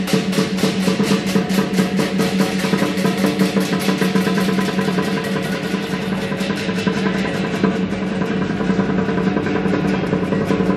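Lion dance percussion ensemble, drum with clashing cymbals and gong, playing a fast, steady beat of about five or six strokes a second over a continuous metallic ring.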